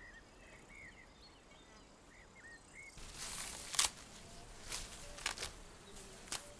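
Faint chirps of a small bird against a quiet outdoor background. About halfway through, a louder rustling and crunching sets in, with several sharp crackles: bare feet and hands moving through garden soil and leafy plants.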